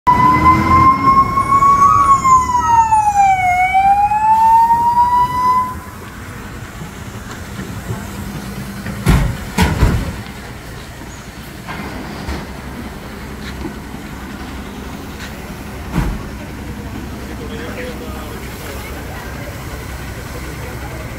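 Fire engine siren wailing for about the first six seconds, its pitch dipping and climbing back before it cuts off. Then steady street background with a few knocks, two close together about nine to ten seconds in and one more near the end.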